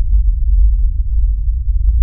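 Loud, steady, deep rumbling drone with nothing high in it: a horror film's sound-design underscore.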